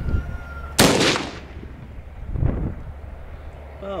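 A single .270 rifle shot, a 150-grain Prvi Partizan soft-point round, about a second in: one sharp crack with a short fading tail. A much fainter thump follows about two and a half seconds in.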